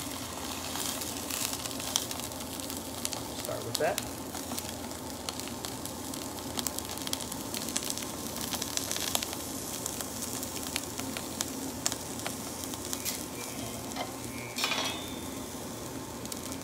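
Salmon fillet frying skin side down in hot oil in a stainless steel pan: a steady sizzle with scattered pops and crackles as the skin crisps.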